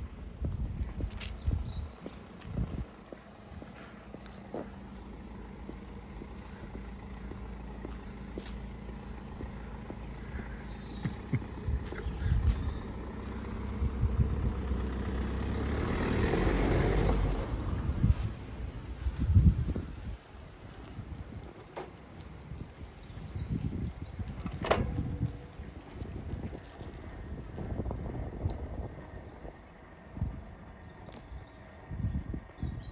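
A car engine running close by, with a steady low hum, then a car passing right beside the microphone, its sound swelling to a peak about halfway through and fading quickly.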